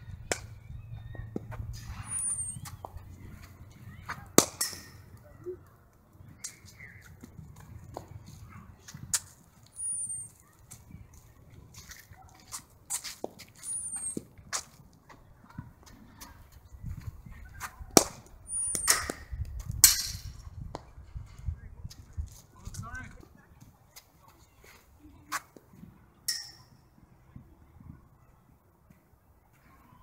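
Cricket ball knocking sharply on bat and pitch during net practice. There are a few separate knocks, with two loud ones close together past the middle. A bird's short falling chirp comes now and then over a low background rumble.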